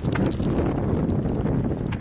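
Footsteps on paving stones, a quick run of steps walking through a jump approach rhythm, with low rumbling noise on the microphone.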